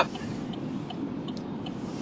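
Steady road and engine noise inside a moving car's cabin, with a few faint ticks.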